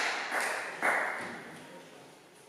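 Rhythmic audience clapping in an echoing hall, two last claps about half a second apart, then dying away.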